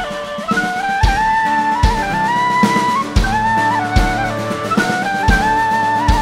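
Live folk-punk band music: a tin whistle plays a quick, stepping melody over kick drum hits roughly once a second and a low bass line.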